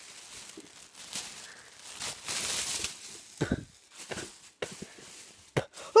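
Mail packaging being torn open and handled: scattered rustling, a longer tearing rustle about two seconds in, and a few light knocks near the end.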